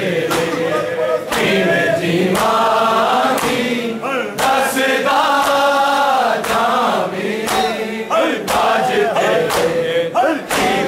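Male voices chanting a Punjabi noha (mourning lament), with sharp hand slaps on bare chests (matam) landing in time about once a second.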